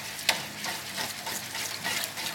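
Wire whisk beating a thin egg batter in a stainless steel bowl: the wires scrape and click against the metal with each stroke, with one sharper click about a quarter second in.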